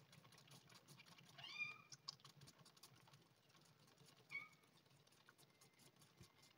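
Faint, rapid clicking of a kitten suckling milk replacer from a feeding bottle. It gives a short rising mew about a second and a half in and a briefer one just after four seconds.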